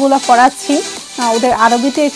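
Speech: a woman's voice talking.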